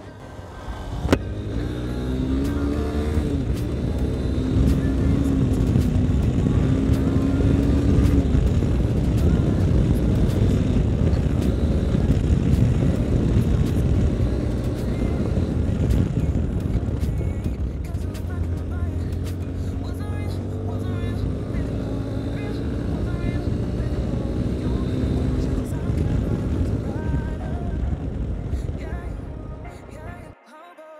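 Yamaha Ténéré 250's single-cylinder engine running under way on a dirt road, its pitch climbing as it accelerates in the first couple of seconds and then holding steady. It climbs again through a run of rises in the second half.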